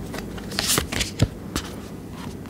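A tarot deck being handled: cards rustling and snapping as they are shuffled and drawn from the deck, in a few sharp clicks, the loudest a little past a second in.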